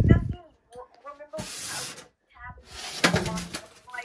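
A table being broken: a loud, deep thump at the start, then rustling and a clatter with sharp clicks about three seconds in, with short voiced exclamations in between.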